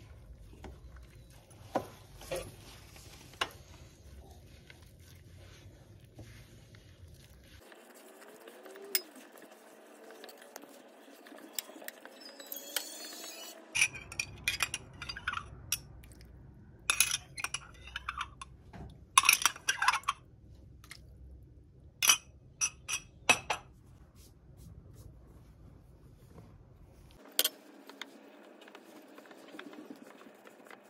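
Cookie dough being mixed by hand in a glass bowl: soft squishing of the butter, sugar and flour mixture, broken by sharp clinks of a metal spoon against the glass bowl and glass, most of them clustered in the middle of the stretch.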